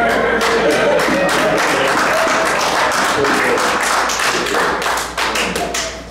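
A congregation applauding, with scattered cheers and shouts among the claps. The clapping thins out near the end.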